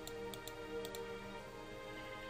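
Soft background music with a few faint mouse clicks: one at the start and a pair a little under a second in, as the shadow-size spinner arrow is clicked down.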